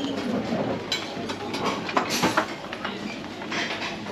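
Dining-room din aboard a passenger ferry: a steady low rumble with scattered clinks of dishes and cutlery, sharpest around two seconds in, and faint voices in the background.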